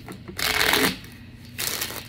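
A deck of tarot cards being shuffled by hand: two short rustling bursts of the cards riffling through each other, about half a second each, a little over a second apart.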